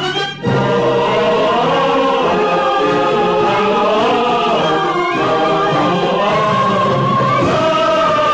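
A choir singing with orchestral accompaniment.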